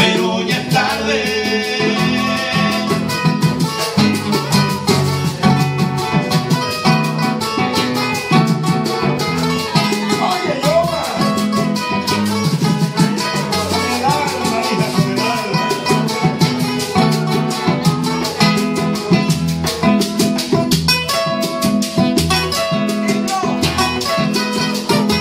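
A paseo vallenato played live by a small group: two acoustic guitars strumming and picking over a hand drum and a scraped guacharaca keeping a quick, steady beat.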